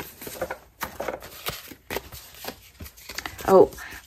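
Paper and card being handled by hand: scattered rustles and soft taps as paper pockets and envelopes are picked up and sorted.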